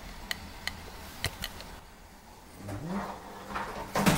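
Four light, sharp clicks in the first second and a half, then a man's short rising vocal sound near the end, as if in surprise.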